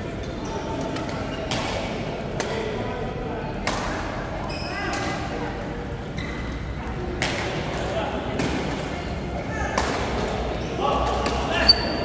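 Badminton rackets striking a shuttlecock in sharp cracks at irregular intervals, about one a second, ringing in a large hall. Short high shoe squeaks on the court and voices in the background come in between.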